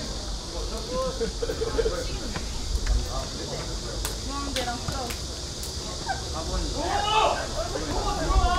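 Scattered calls and shouts of footballers' voices across an open pitch, irregular and busier near the end, over a steady hiss and low rumble. A few faint sharp clicks come midway.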